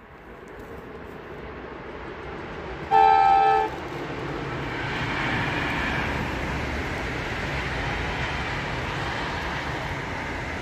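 Passenger train approaching and passing on an electrified main line, its rumble building steadily. One short horn blast sounds about three seconds in and is the loudest moment. The passing noise then stays up, peaking a couple of seconds later.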